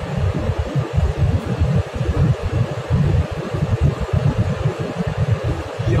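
Cabin noise of a Ravon Nexia R3 running at about 145–150 km/h: engine, tyre and wind noise, with a steady hiss above an uneven low rumble.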